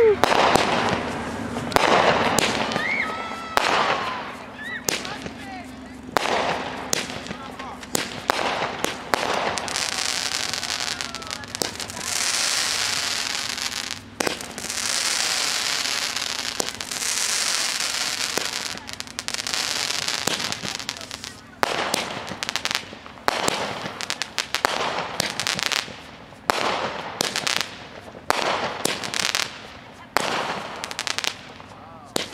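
Consumer fireworks going off, with sharp bangs and pops throughout and a few whistles gliding in pitch near the start. In the middle a firework fountain spraying sparks hisses steadily for several seconds. Toward the end comes a fast run of bangs and crackles.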